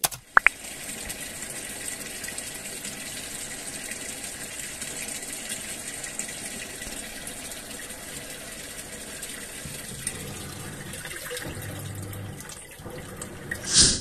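Water pouring into a washing machine drum over a load of clothes as the machine fills, a steady rushing. A low hum joins it for a couple of seconds near the end.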